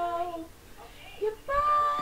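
A woman singing to herself: a sliding note that falls away and stops about half a second in, a short pause, then a new note held steadily near the end.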